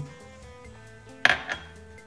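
Quiet background music, with a sharp tap of a metal spoon against a stainless-steel pot about a second in, then a smaller tap just after.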